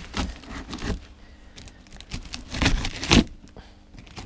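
Plastic-wrapped, taped cardboard box being prised and torn open with a thin metal tool: scraping and crinkling of tape, film and cardboard in a few irregular bursts, the loudest about three seconds in.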